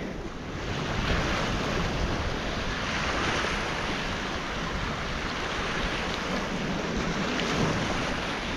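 Choppy sea waves washing against the rocks, a steady rushing with wind buffeting the microphone.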